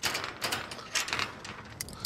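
Irregular metallic clicking and rattling of a metal garden gate's latch being worked, picked up close by a clip-on wireless microphone.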